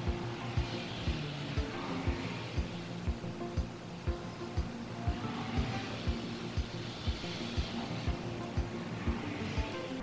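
Background music with a steady beat of about two thumps a second over sustained tones.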